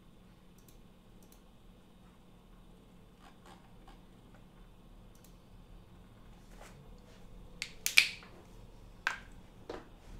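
Quiet room tone with a few faint ticks, then a cluster of sharp clicks near the end, the loudest a pair of snaps about eight seconds in and two smaller clicks after it.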